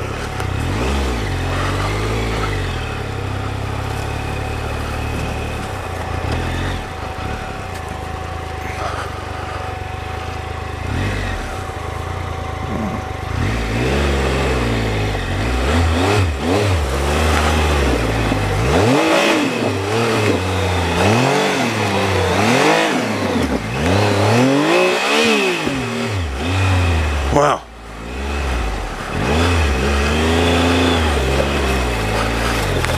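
Triumph Explorer XCa's three-cylinder engine under way at low speed on a rough dirt trail. It runs fairly steady at first, then the revs rise and fall over and over, about once a second, as the throttle is worked over the uneven ground. A sudden short drop comes near the end.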